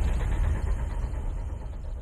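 A deep low rumble, the tail of a cinematic whoosh-and-impact sound effect, slowly fading away.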